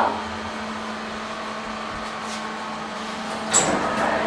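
SMW elevator car travelling with a steady machine hum and a steady tone, then a sudden clunk about three and a half seconds in as it arrives at the floor.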